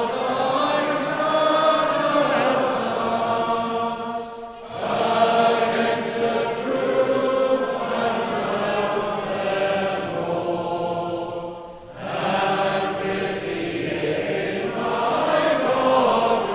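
A congregation singing a metrical psalm together, in long held notes, with two short breaks between lines about four and a half and twelve seconds in.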